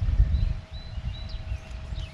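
Wind buffeting the microphone in an uneven low rumble, with a few faint, short, high bird chirps in the first second and a half.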